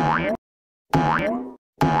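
A short edited-in sound clip looped over and over, about once a second. Each repeat is a half-second burst with a pitch that slides upward, cut off sharply into silence before the next one starts.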